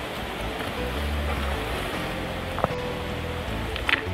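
Shallow stream running over a rocky bed, a steady rush of water, with two short knocks as rocks are handled in the water, the louder one near the end.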